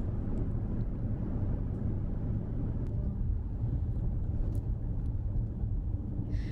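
Steady low rumble of a car driving, road and engine noise heard from inside the car, with a couple of faint ticks.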